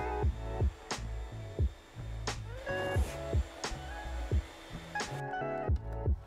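Background music with a steady beat, about one and a half beats a second, over a low bass line.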